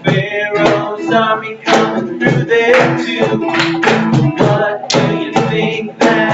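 A man singing a lively song to a strummed acoustic guitar, with a cajon keeping the beat.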